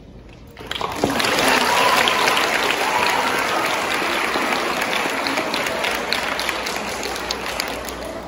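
Audience applauding, starting abruptly about half a second in and easing off slightly toward the end.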